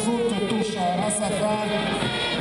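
Marching brass band playing, with long held notes over a steady beat.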